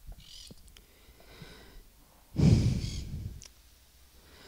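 A man breathing close to a handheld microphone: a faint intake near the start, then a heavy exhale like a sigh, about a second long, a little past halfway.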